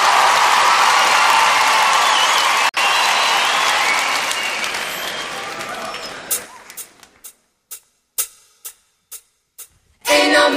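Theatre audience applauding and cheering, dying away over about six seconds. It is followed by about ten sharp single clicks, two or three a second, in the near quiet.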